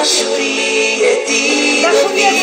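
A worship song: a singing voice over instrumental backing, with held, sustained notes.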